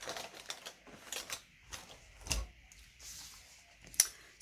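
Faint clicks and taps of hands handling a paper sticker sheet and metal tweezers, with a soft thump a little after two seconds in and a brief paper rustle near the end.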